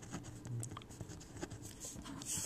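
Pencil writing on paper: a faint series of short strokes.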